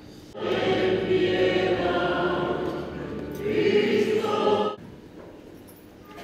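Choir singing during Mass, starting about half a second in and breaking off abruptly near the end, leaving a much quieter stretch.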